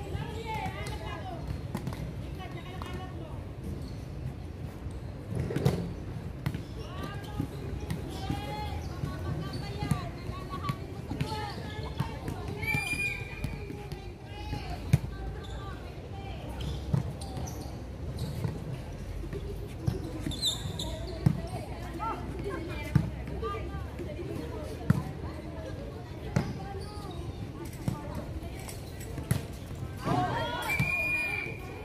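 Volleyball in play: the ball is struck by hands and bounces on a hard court, giving a series of sharp smacks that come more often in the second half. Players call out and shout between the hits.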